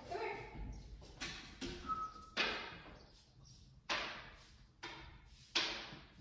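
A series of sharp knocks, about one a second, each echoing briefly in a large room.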